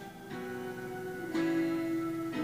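Acoustic guitar strumming slow chords, with a new strum about once a second and the chord changing a little over a second in.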